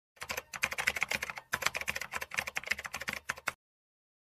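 Rapid typing on a computer keyboard, a dense run of key clicks, used as a sound effect. It breaks off briefly about a second and a half in, resumes, then stops abruptly half a second before the end.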